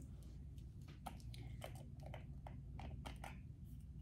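Faint, irregular small clicks and crinkles of a small cosmetics package being handled and opened.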